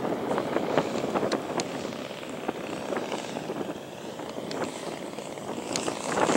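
The 85cc gas engine and propeller of a large Hangar 9 Sukhoi RC aerobatic plane running in flight, dipping a little and then growing louder near the end as the plane closes in. Wind buffets the microphone.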